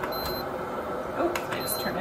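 Electric gooseneck kettle's control base giving two short, high beeps about a second and a half apart as its knob is worked, with light clicks from the knob.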